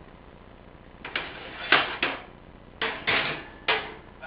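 A run of about six sharp knocks and clatters from things being handled in a kitchen, starting about a second in, with the loudest knock a little before the middle.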